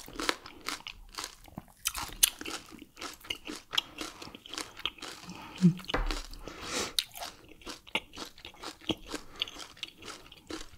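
Close-miked eating sounds: a person chewing and biting into BBQ turkey wing and fufu with palm nut soup, with wet, crackly crunches at irregular intervals and one louder crunch about six seconds in.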